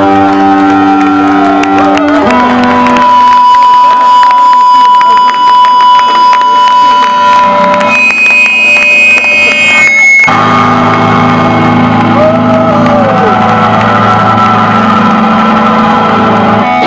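Rock band playing live and loud: distorted electric guitar and bass chords over drums. A steady high tone is held from about two seconds in, and about ten seconds in the band cuts abruptly into a new low, heavy chord.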